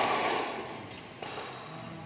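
Badminton rally in an echoing indoor hall: a racket strikes the shuttlecock once, a little over a second in, over a noisy background of spectators.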